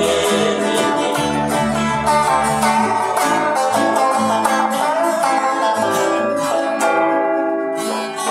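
Live band music: an electric guitar played with a bass guitar underneath, the low bass notes dropping out partway through.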